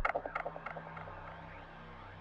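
Electronic sound effect: a loud low buzz cuts off, and a quick, irregular run of short chirping beeps follows and fades away.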